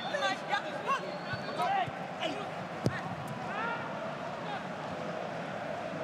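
Footballers calling and shouting to each other across the pitch, with the voices carrying clearly in an empty stadium. There is one sharp thud of the ball being kicked just before three seconds in.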